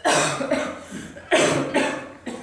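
A man coughing: two loud coughs a little over a second apart, each trailed by a shorter one.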